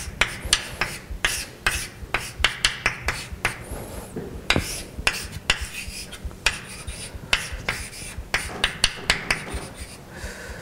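Chalk writing on a blackboard: quick, irregular taps, several a second, mixed with short scratching strokes as formulas are written.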